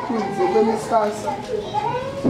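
Speech: a man speaking into a microphone, with higher children's voices mixed in.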